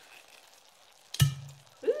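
A single sharp knock about a second in, a hard object bumped or set down, with a short low ringing after it.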